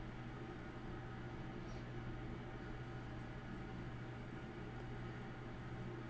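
Faint steady low hum with a light hiss: background room tone in a pause of the voice-over. No grinder noise is heard.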